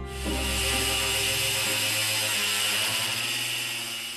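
Hand-held angle grinder running steadily as it cuts, a dense high grinding noise that slowly eases toward the end. Orchestral string music fades out beneath it.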